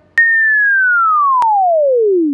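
Cartoon falling-whistle sound effect: a single pure tone that starts with a click and glides smoothly down from high to low pitch, with a faint click partway through.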